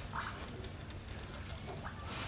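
Quiet hall ambience between speeches: a steady low hum under faint haze, with a faint short sound just after the start and another near the end.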